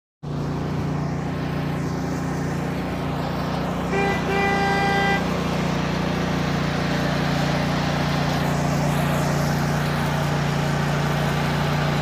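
A steady low engine-like hum, with a vehicle horn tooting twice about four seconds in, a short toot then a longer one.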